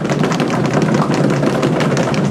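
Audience applause: many hands clapping in a dense, even patter.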